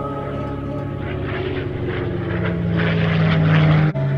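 A sound effect of propeller aircraft engines droning and growing louder over a sustained musical drone. It cuts off suddenly just before the end.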